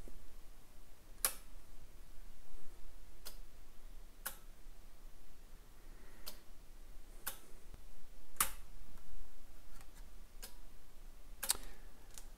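Relay on a Micro 810 PLC panel clicking as it switches on and off, a sharp click every one to two seconds in an alternating long-short rhythm: the PLC's automatic cycle of two seconds on and one second off.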